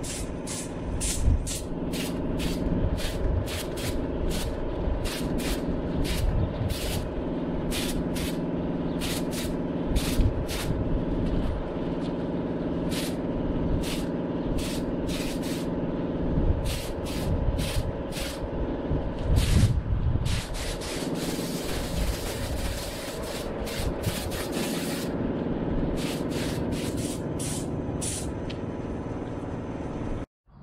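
Compressed-air spray gun laying down a clear coat, hissing in many short trigger bursts about a second apart, with one longer unbroken spray of a few seconds past the middle. A steady motor hum runs underneath.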